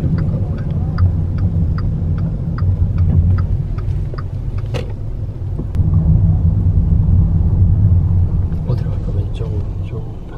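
Car cabin rumble from the engine and road while the car drives slowly along a city street. The rumble gets louder about six seconds in, with scattered light clicks.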